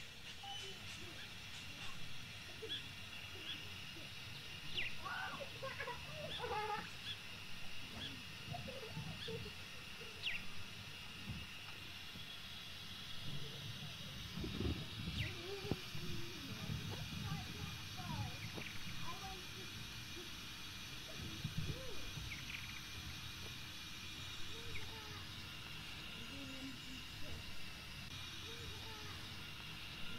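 Quiet outdoor background: a steady high hiss with occasional short bird chirps, and faint indistinct voices now and then.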